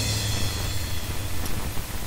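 A crash cymbal rings out and fades over about the first second, the tail of the last hit of a drum part, over a low steady hum.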